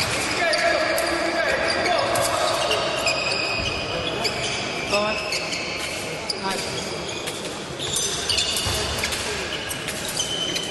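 Fencers' footwork on the piste: shoes stamping and squeaking on the hard floor in short irregular knocks and squeals. A murmur of voices echoes through the large hall.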